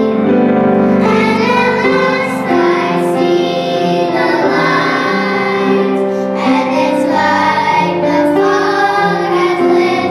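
A children's vocal group of young girls singing together into microphones, a mashup of pop songs, with sustained sung notes that carry on without a break.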